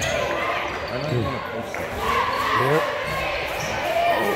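Basketball bouncing on a hardwood gym floor during play, with voices and shouts echoing in the gymnasium.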